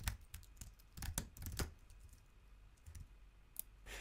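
Typing on a computer keyboard: faint, scattered key clicks in short runs, with quiet gaps between them.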